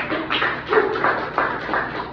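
A small audience clapping, with separate sharp claps close by coming about three or four a second.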